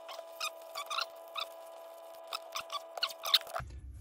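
Blue painter's tape pulled off the roll in a series of short squeaky tugs and wrapped over paper towel around a pump body to shield its bearing, over a faint steady hum.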